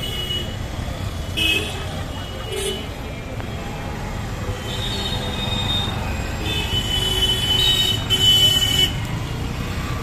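Busy street traffic with engines running and vehicle horns honking over it: short toots about a second and a half and two and a half seconds in, then longer, overlapping honks from about five seconds in until near the end.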